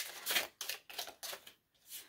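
A deck of Hidden Truth Oracle cards being shuffled in the hands: a quick run of papery card-on-card flicks that stops about one and a half seconds in, with one last faint flick near the end.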